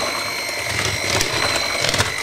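Electric hand mixer running steadily with a high motor whine as it mixes thick chocolate brownie batter in a plastic bowl, with a few short clicks of the attachments against the bowl.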